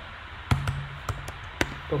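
Computer keyboard keys being typed, about five separate key clicks.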